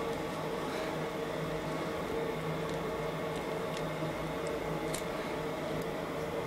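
Steady room hum from a fan or ventilation unit, carrying two held low tones. A few faint, short ticks from the cannula dressing being handled and pressed down sit over it.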